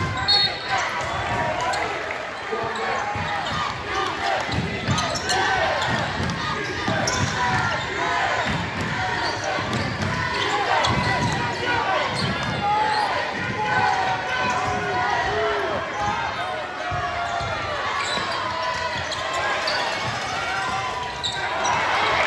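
Basketball game in a gym: many crowd voices talking and shouting over each other, with a basketball bouncing on the court floor underneath, in a large echoing hall.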